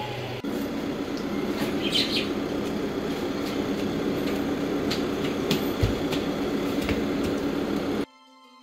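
Steady outdoor background noise with a low hum, a short high chirp about two seconds in, and scattered light clicks and a couple of low thumps near the end.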